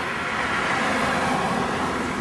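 A car passing on the street: tyre and engine noise swells to a peak about a second in, then fades.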